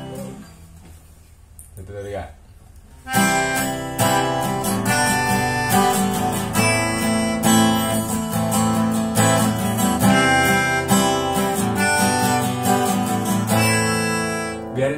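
Acoustic guitar strummed steadily with a melodica (pianika) blown along, starting about three seconds in and continuing as a busy jam of sustained chords and notes.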